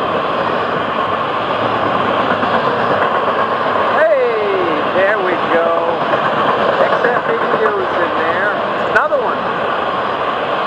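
Freight train's intermodal cars rolling past at speed close by, a loud, steady noise of wheels on rail.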